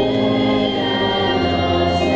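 Youth choir singing a Portuguese Catholic hymn in held, sustained chords, accompanied by organ.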